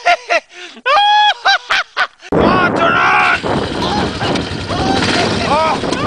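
Shrill, high-pitched laughter in short bursts, then about two seconds in an ATV engine cuts in suddenly and runs loudly, with more voice sounds over it.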